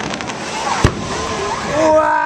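Fireworks display: a shell bursts with one sharp bang just before the middle, with fainter crackling around it and voices in the crowd. Near the end a steady held tone with several pitches starts up.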